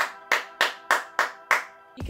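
Hand claps demonstrating a written rhythm of quarter and eighth notes: six even claps, about three a second, over soft background music.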